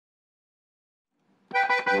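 Silence, then about one and a half seconds in an accordion, likely a Steirische button harmonika, opens the folk tune with three short, quick chords.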